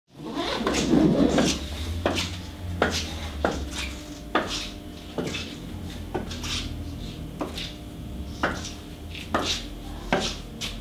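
Footsteps of hard-soled shoes on a floor at an even walking pace, sharp clicks a little under a second apart, over a low steady hum.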